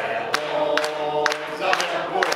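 Several voices singing together without instruments, holding long notes, with sharp percussive clicks about twice a second.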